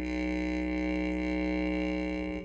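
Music: a didgeridoo drone held on one steady low note.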